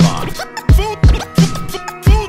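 Hip-hop beat with a kick drum about every 0.7 seconds, and a DJ scratching a vocal sample over it in short gliding, back-and-forth strokes.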